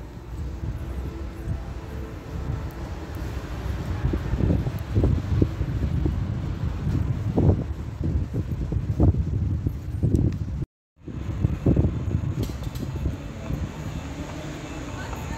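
Outdoor street noise dominated by a low rumble of wind buffeting the microphone, with irregular low thumps. The sound cuts out completely for a moment about eleven seconds in.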